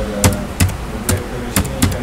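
Typing on a computer keyboard: a handful of separate key clicks, unevenly spaced, as a word is typed out.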